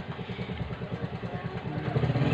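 A small engine idling with a low, rapid, even pulse.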